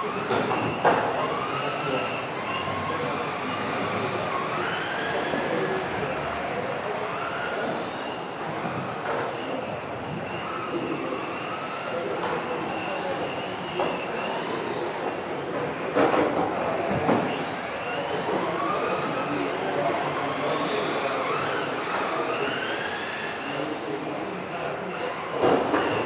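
Several electric RC racing cars running laps together, their motors whining up and down in pitch as they speed up and brake into the corners. A few sharp knocks break through, about a second in, twice around the middle, and near the end.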